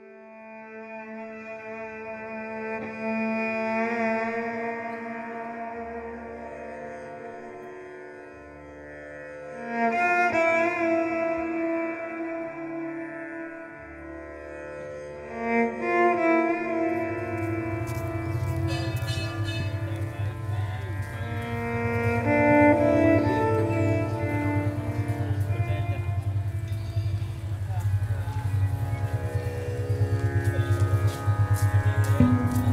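Violin playing a slow melody of long held notes with vibrato. Just past halfway, a low drone with a fast pulse joins underneath.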